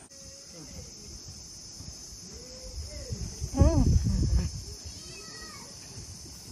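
A steady high insect chorus, cricket-like, with indistinct voices speaking briefly a few times, loudest about three and a half seconds in.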